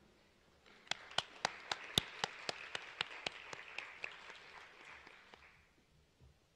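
Audience applauding, starting about a second in and fading out near the end, with one person clapping close to the microphone at about four claps a second.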